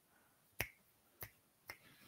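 Three faint, sharp clicks against near silence, the first about half a second in and the others roughly half a second apart.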